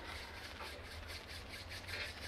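A pair of bare hands rubbed briskly together to warm them, palm against palm, in quick even strokes about five times a second.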